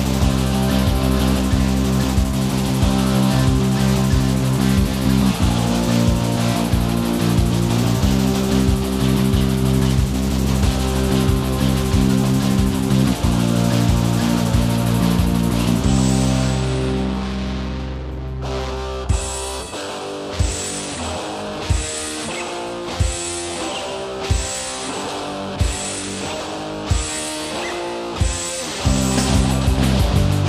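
Rock band recording without vocals: loud electric guitars with bass and drums. Around two-thirds of the way in, the band drops to a sparser passage punctuated by a sharp hit about every second and a quarter, and the full band comes back near the end.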